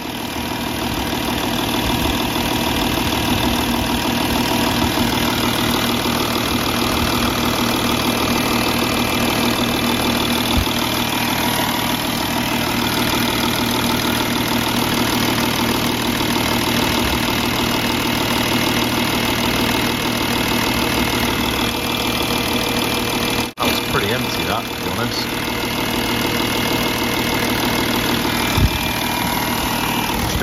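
Audi TDI diesel engine idling steadily with the bonnet open.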